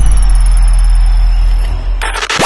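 Electronic intro sting under a logo animation: a loud, deep steady rumble with a thin high tone that slides down near the start and then holds.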